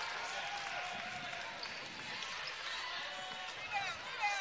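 Steady hum of an indoor arena crowd during live basketball play, with a ball being dribbled on the hardwood court.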